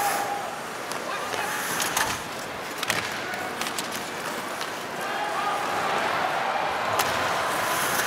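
Ice hockey arena sound: steady crowd noise with skates scraping on the ice and a few sharp clacks from sticks and puck, about two, three and seven seconds in.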